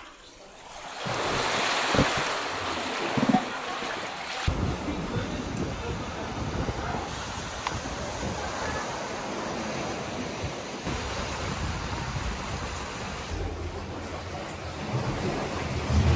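Ocean surf washing over a rocky coral shore, with wind buffeting the microphone. The wash changes abruptly about four seconds in, turning deeper and steadier.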